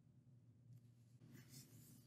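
Near silence with a faint low hum, and from about a third of the way in, the faint scratching and light ticks of a stylus writing on a screen.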